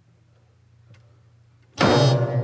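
A quiet pause, then near the end a single loud, sudden geomungo stroke: the bamboo plectrum strikes the silk strings, which ring on low.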